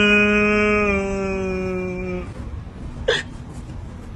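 A person's long, drawn-out wail of dismay over a ruined processor, falling slightly in pitch and breaking off about two seconds in. A short, sharp sob-like gasp follows about three seconds in.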